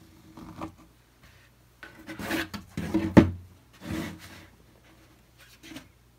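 Pencil scratching and rubbing across a dry acrylic-painted panel in a handful of short strokes, with a bump and scrape of the panel on the tabletop about three seconds in as it is turned around.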